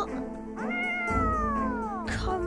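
A tabby cat's long meow, starting about half a second in and falling slowly in pitch, over background music.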